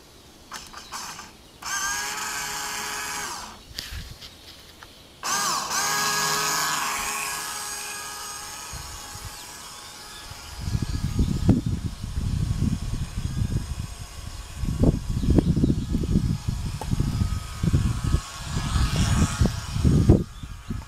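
A motor whining twice: a steady two-second whine, then a second one that rises in pitch at the start and fades away over about four seconds. From about halfway on, wind rumbles in irregular gusts on the microphone.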